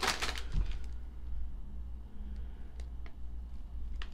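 A foil potato chip bag crinkling as it is handled, dense for about the first second and then only a few faint crackles over a steady low hum.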